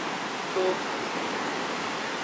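Ocean surf washing onto the shore, a steady hiss of waves.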